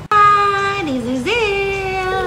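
A song with a high sung voice, cutting in abruptly and holding long notes, dipping in pitch and rising again about a second in.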